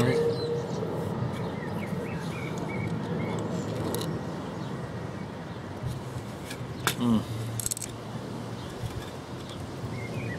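A few sharp clicks and knocks as a Landis & Gyr ZCB120d electricity meter's works are handled and lifted from its base on a wooden table, the loudest cluster about seven seconds in. Birds chirp faintly in the first few seconds.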